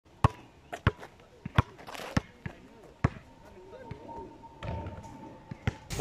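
Basketball dribbled on an asphalt court: a handful of sharp bounces at uneven intervals, with a longer gap between bounces in the second half.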